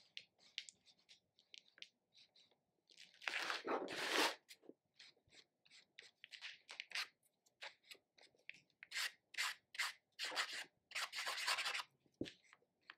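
Chunky marker tip scribbling on journal paper in many quick back-and-forth strokes, a dry scratchy rubbing. The strokes grow longer and louder about three seconds in and again near the end.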